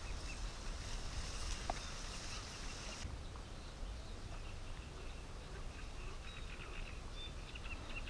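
Quiet reedbed ambience: a faint high buzz of insects for about three seconds that cuts off suddenly, then scattered faint bird chirps over a steady low rumble.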